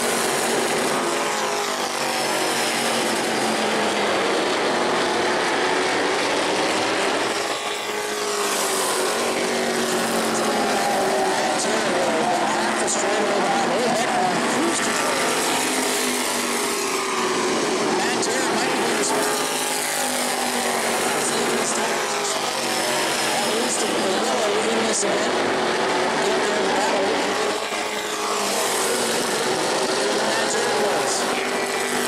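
Modified stock-car racing engines running hard around an asphalt short-track oval, their pitch rising and falling every few seconds as the cars accelerate and lift through the laps.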